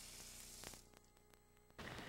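Near silence: a faint even hiss that cuts out to dead silence for about a second in the middle, then returns.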